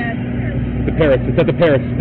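Steady low engine hum of a running vehicle, with a man's voice shouting the same short word over and over from about a second in.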